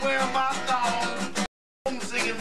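Acoustic guitar strummed in a short chopped snippet that cuts off abruptly about one and a half seconds in, leaving a gap of dead silence before the playing starts again near the end.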